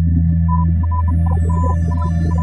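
Electronic soundtrack music: a steady low synthesizer drone with short, high notes picked out above it and a sweeping hiss coming in high up about half a second in.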